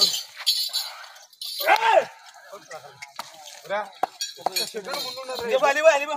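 Men shouting wordless calls to drive draught bulls hauling a stone block, with sharp clicks and clinks in between. The cries come in short bursts at first, then run together into a wavering string of yells that is loudest near the end.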